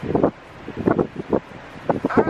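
Wind noise rumbling on the camera microphone, broken by several short, muffled bursts of voice.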